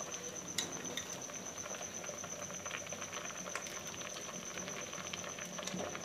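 A pot of milky chana dal payasa simmering on the stove: a steady crackling bubble with scattered small ticks and one sharper click about half a second in.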